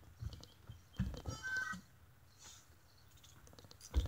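Footsteps on a wooden deck: a few soft, low thuds in the first second and a half, with a short faint high-pitched sound about a second and a half in.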